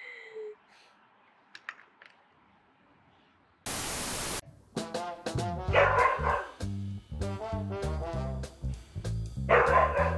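Siberian husky vocalising twice, at about six and about nine and a half seconds in, over background music with a steady beat. The music starts just after a brief burst of loud hiss about four seconds in; before that there are only a few faint clicks.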